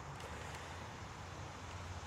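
Faint, steady outdoor background noise with a low hum, and no distinct sound in it.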